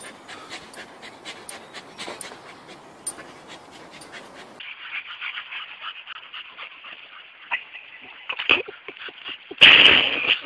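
Dogs breathing hard and straining while hanging by their jaws from a rope tied to a tree branch, in quick short breaths. About halfway through the sound turns more muffled and tinny, and a short loud burst comes near the end.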